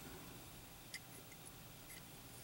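Near silence: room tone, with a few faint light clicks about a second in and once near the end as a small die-cast toy car is turned in the fingers.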